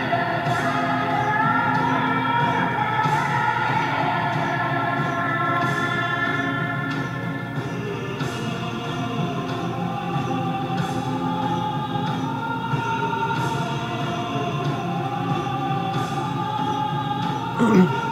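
Film score: a choir of voices singing long, sliding melodic lines, with a beat struck about every two and a half seconds.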